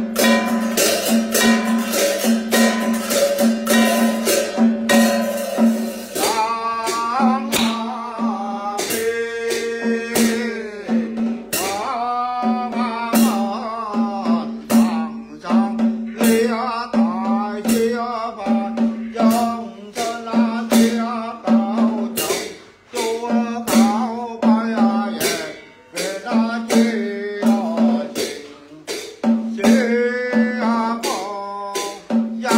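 A man chanting a ritual text in a sung, melodic line, over sharp percussive strikes about twice a second and a steady low drone.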